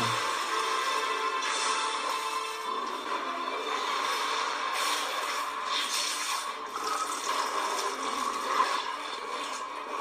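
Anime episode soundtrack playing: background music under a dense, steady rushing noise of battle sound effects, with a few held tones in the first couple of seconds.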